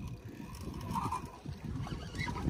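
Low background rumble aboard an offshore fishing boat, with a few faint knocks.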